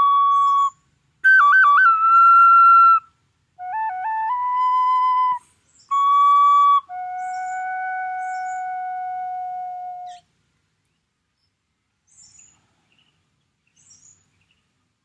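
Small wooden flute played in short phrases of held notes, each opened by quick grace-note flips, ending on one long, lower held note that stops about ten seconds in.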